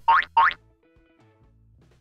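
Two quick cartoon sound effects, one right after the other, each a short steep rise in pitch lasting a fraction of a second.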